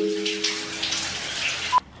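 Shower water spraying and splashing, with a man's held vocal note fading out about a second in. The sound cuts off suddenly near the end.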